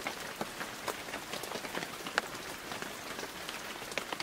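Rain falling steadily: a soft, even hiss with individual drops ticking sharply here and there.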